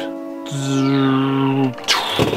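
A toy laser-beam sound over background music: a held buzzing tone with a high whistle sweeping down over about a second, ending in a sharp hit near the end.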